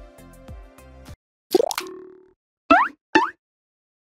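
Background music stops about a second in, followed by cartoon-style sound effects: one rising swoop, then two short rising plops in quick succession, louder than the music.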